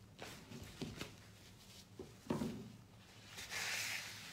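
Light taps and knocks of things handled on a wooden work table, one louder knock a little past two seconds in. Near the end comes a short rustle of paper towel as the table is wiped.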